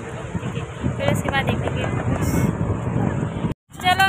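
Wind rumbling on a phone microphone, with faint voices in the background. The sound cuts off abruptly about three and a half seconds in.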